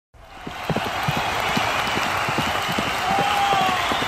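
Racetrack sound of trotting horses going past: an irregular patter of hoofbeats over a steady crowd noise that comes up from silence at the very start. A few drawn-out shouts or calls stand out about three seconds in.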